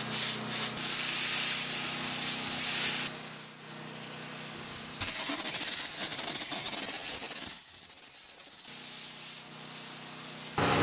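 Compressed air blasting from an IPA Air Comb multi-port 90° blow gun into an air-conditioner condenser coil, a loud hiss. It runs hard for about the first three seconds, eases, then blasts again from about five seconds to seven and a half.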